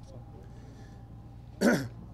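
A man clears his throat once, a short, loud burst near the end, over a low steady background rumble.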